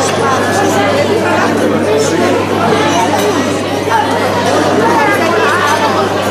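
Crowd chatter: many people talking at once in a large room, a steady hubbub of overlapping voices.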